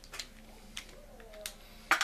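Handle of a Penn 450SSG spinning reel being worked loose and pulled out of the reel body: a few light clicks, the sharpest one near the end.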